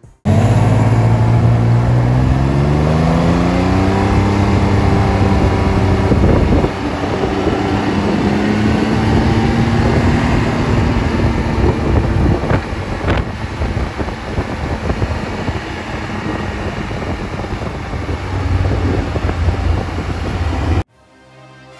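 A BRP Can-Am three-wheeled motorcycle's engine pulling away, its pitch rising over the first few seconds and again after a brief dip, then running steadily at speed with rushing road and wind noise.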